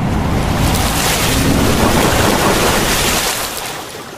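Intro sound effect of a big water splash and rushing surge with a deep rumble. It swells in the middle, then fades out near the end.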